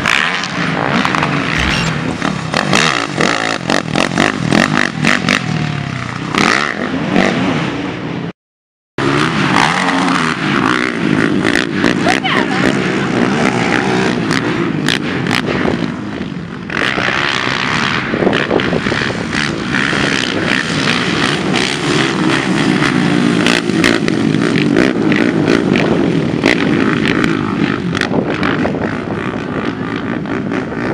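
Racing ATV (quad) engines revving and running hard on a motocross track, with a brief cut-out of all sound about eight seconds in.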